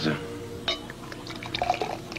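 Champagne being poured into a glass, the pitch of the filling rising, over soft background music.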